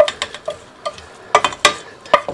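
Metal pot and perforated strainer insert clinking and knocking together as they are handled: a sharp clink at the start, a few light taps, then two louder knocks a little past the middle.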